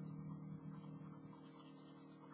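Pen strokes scratching on sketchbook paper, faint and repeated, over a steady low hum.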